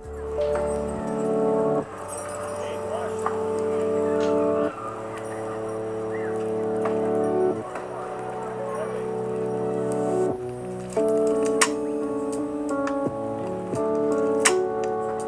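Mellow music played back on an M1 MacBook Pro 13-inch's built-in speakers as a speaker test: held chords that change about every three seconds, with a brief drop-out a little after ten seconds in.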